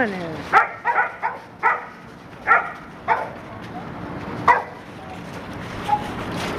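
Dog barking, about seven short, separate barks at an uneven pace over four seconds.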